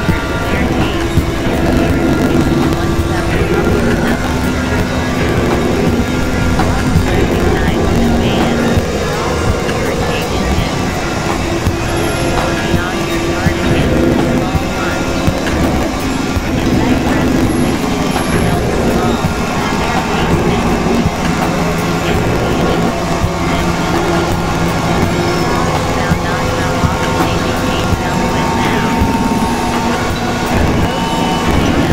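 Experimental synthesizer drone-and-noise music: a dense, steady noise bed with held low tones that change every few seconds.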